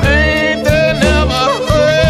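Blues band music: a harmonica plays a lead line with bent, sliding notes over bass and a steady drum beat.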